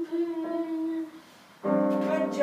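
A voice humming one held note that sags slightly in pitch and stops about a second in. Near the end, an electronic keyboard starts sounding loudly.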